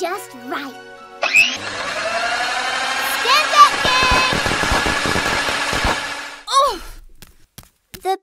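Cartoon sound effect of an electric hand mixer whirring in a bowl for about five seconds, rising in pitch as it spins up, then cutting off suddenly. Short squeaky character vocal sounds come before it, and squeals come during it.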